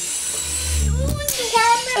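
Heliball toy drone's small rotors whining at a steady high pitch, which stops about a second in with a knock. A child's voice follows.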